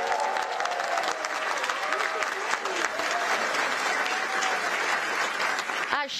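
Large audience applauding: dense, steady clapping with voices calling out among it.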